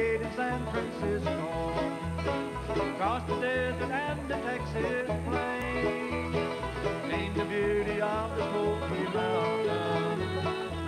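Bluegrass band playing an instrumental passage: quick picked banjo and guitar notes over an upright-style bass note changing about twice a second, with some sliding notes from a fiddle.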